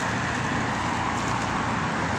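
Steady city street traffic: cars crawling past in a slow-moving multi-lane queue, a continuous mix of engine and tyre noise.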